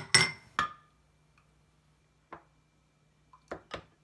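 Small glass bowls clinking against the rim of a glass measuring cup as melted butter and vanilla are tipped in. Three quick clinks at the start, a single one about two seconds in, and two more near the end.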